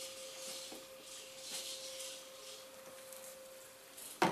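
Quiet small-room tone with a faint steady high hum, broken by a few soft rustles of handling.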